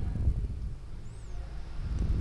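Low rumbling background noise on the microphone between words, with no distinct event.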